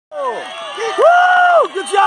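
Several high-pitched voices shouting and cheering, overlapping at first, then one long high yell held for about half a second.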